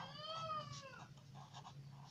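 A single faint animal call about a second long, rising then falling in pitch, over the faint scratching of a pen writing on paper.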